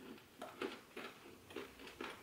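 Faint chewing of a crunchy, crumbly almond-based bar: a scatter of small, irregular crunches.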